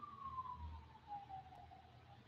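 A faint single tone falling slowly and evenly in pitch, fading out near the end.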